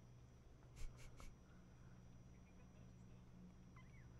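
Near silence: faint room tone with a steady low hum, broken about a second in by three brief, soft scratchy sounds close together.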